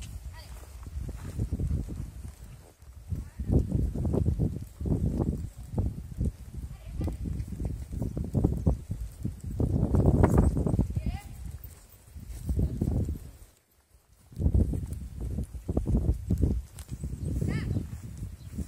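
Horse cantering in a sand arena, its hoofbeats coming in uneven low thuds that rise and fall, with a brief lull just before the middle of the stretch.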